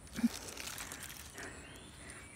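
A brief wordless sound from a woman's voice near the start, then faint, steady outdoor background noise.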